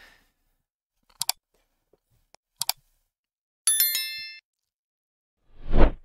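A few sharp clicks, then a bright electronic bell chime of several stacked tones that rings for under a second and fades. It is the sound effect of a YouTube like-subscribe-bell animation.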